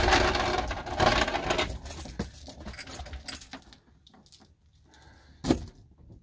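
A metal security chain rattling and clinking as it is pulled out and handled, loudest in the first two seconds and then in scattered clinks. The chain is used to lock the cab doors shut. One sharp knock comes near the end.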